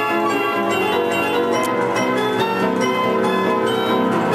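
Imhof & Mukle Badenia II orchestrion playing mechanically, its pipes and percussion together in one continuous tune. Struck notes ring out over held pipe tones.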